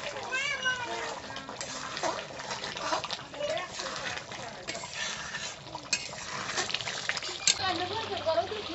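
Metal spatula scraping and clinking against a kadai as simmering chicken curry is stirred, with scattered sharp clinks throughout. A short run of high rising-and-falling calls sounds about half a second in.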